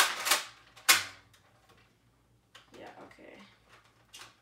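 Nerf N-Strike Elite Crossbolt's plastic pump-action priming handle being worked. Two sharp clacks about a second apart, then quiet.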